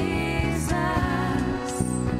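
Live worship band playing a song: strummed acoustic guitars and keyboard over a steady cajon beat, with a voice singing a gliding, held phrase about halfway through.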